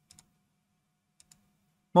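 Two faint computer mouse clicks about a second apart, each a quick double tick of press and release.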